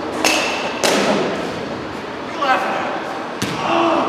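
Three sharp knocks of baseballs striking, echoing in a large indoor hall: two close together near the start, the first with a brief metallic ring, and a third about three and a half seconds in. Voices chatter in the background.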